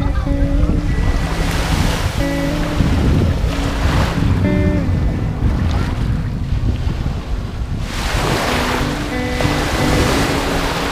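Small waves breaking and washing up a pebble shore in repeated hissing surges, strongest about two seconds in, around four seconds and again near the end, with wind buffeting the microphone. Faint music with held notes plays underneath.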